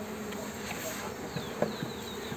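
Honeybees buzzing over the top bars of a freshly opened hive box: a steady hum, with a few light clicks in the second half.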